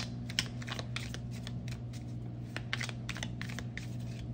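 A deck of round oracle cards being shuffled by hand: a quick, irregular run of small card clicks and flicks.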